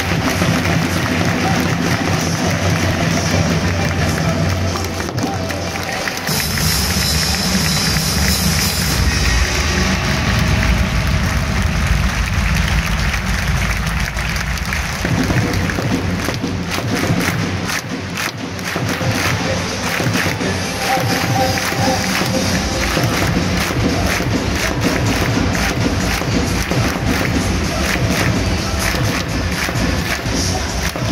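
Music playing over the steady noise of a football stadium crowd.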